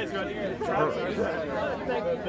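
Chatter of several people talking.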